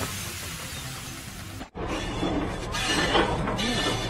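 A steady noisy hiss cuts off abruptly about a second and a half in. It is followed by the continuous crashing rumble of rocks breaking loose and tumbling down a rocky slope.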